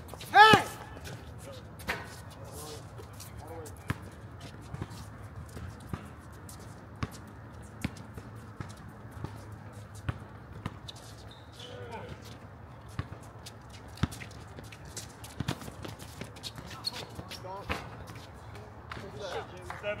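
A basketball bouncing on a hard outdoor court, with sharp knocks at irregular intervals and players' voices calling out. There is a loud shout about half a second in.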